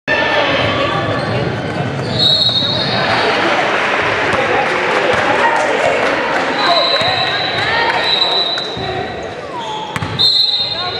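Crowd and players talking and calling out in a large gymnasium, an echoing hubbub of many voices. A steady high-pitched tone sounds about two seconds in and again for over a second near the seven-second mark.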